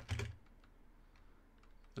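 Faint keystrokes on a computer keyboard: a few scattered soft taps as a word is typed.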